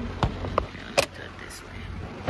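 A few sharp taps and knocks from a phone being handled and turned around inside a car, the loudest about a second in, over a low steady rumble.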